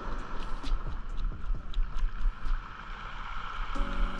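A knife scraping scales off a parrotfish against the grain: a quick, irregular run of short scrapes and clicks over a steady low rumble.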